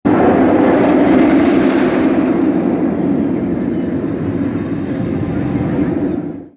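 Steel roller coaster train running along its track: a loud, steady rumble of wheels on rail that starts abruptly and holds throughout.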